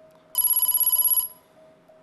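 Game-show letter-reveal sound effect: a rapid, bell-like electronic trill a little under a second long, starting about a third of a second in. It signals that a letter has been opened on the answer board.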